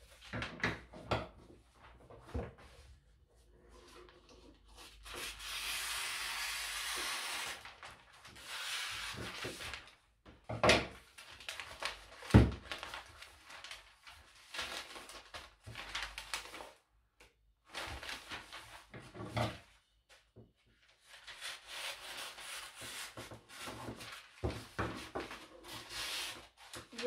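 Gift-wrapping paper rustling and sliding over a wooden tabletop as it is handled around a cardboard box, in stretches of a few seconds. Between them come a few sharp knocks on the table, the loudest a little past halfway.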